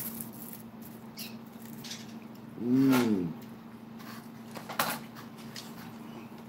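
Chewing and mouth clicks from a person eating, with a short hummed "mmm" about halfway through that rises and falls in pitch, over a steady low electrical hum.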